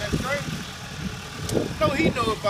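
Men talking briefly over the low, steady run of an idling vehicle engine, with a sharp click about one and a half seconds in.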